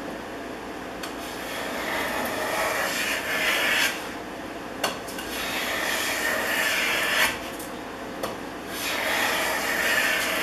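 A Stanley No. 130 double-end block plane cutting shavings from the edge of a wooden board in three long, slow passes, with a sharp click between the first two.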